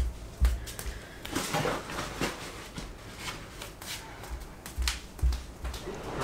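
A backpack being handled and packed: irregular rustles and clicks of fabric and buckles, with a few low thumps, under quiet background music.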